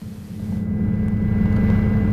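Aircraft in flight: a steady low engine drone that fades in over the first half second and then holds.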